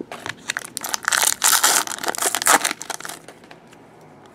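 Foil wrapper of a Select hockey card pack being torn open and crumpled, a dense crackling rustle for about two and a half seconds that stops near the end.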